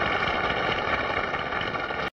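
Studio audience applauding at the end of the song, a steady dense clatter of clapping.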